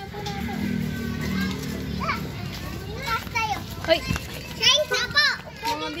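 Young children playing, their high voices calling out in short bursts, busiest in the second half.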